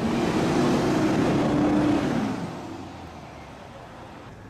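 A vehicle driving past close by, loud for about two seconds, then fading away.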